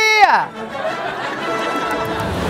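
The end of a long, drawn-out shout of the name "Suzy!", followed by crowd noise from an audience with music coming in underneath.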